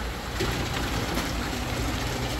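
Water pouring steadily from a PVC pipe outlet into a plastic barrel over a low steady hum, getting a little louder about half a second in. The strong flow is the sign of a freshly cleaned bead filter that is no longer clogged.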